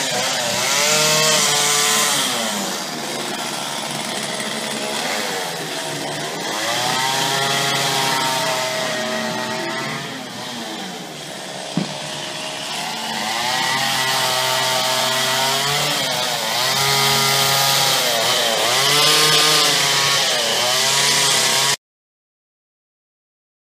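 Chainsaw carving wood, its engine revved up and down again and again so that the pitch keeps rising and falling. There is one sharp click about halfway through, and the sound cuts off suddenly just before the end.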